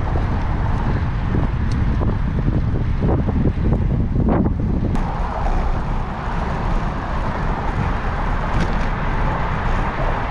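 Wind buffeting the microphone of a camera on a moving bicycle: a steady low rumble with hiss, which changes character abruptly about halfway through.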